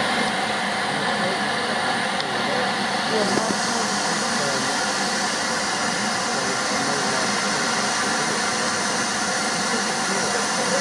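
Steady hiss of steam from a standing Jubilee-class steam locomotive, growing brighter about three seconds in.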